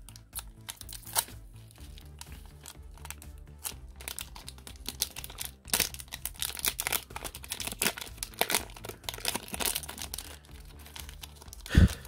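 Plastic-foil wrapper of a Bakugan trading-card booster pack crinkling and tearing as it is pulled open by hand, in many short irregular crackles. A single low thump comes near the end.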